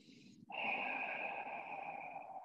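A woman breathing audibly: a short breath, then from about half a second in a long, steady exhale, the controlled breathing held through a Pilates exercise.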